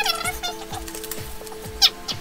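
Background music with a steady beat and held tones. A high, gliding, cat-like vocal sound comes at the start and another briefly near the end.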